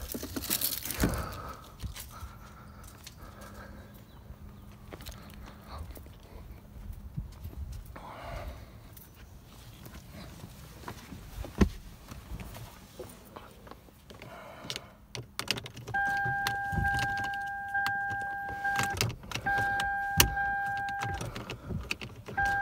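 Keys jangling and scraping as a car key is worked into the ignition of a Lexus LS 430. In the last few seconds a steady electronic warning tone sounds, breaks off and starts again twice, after a single sharp thud near the middle.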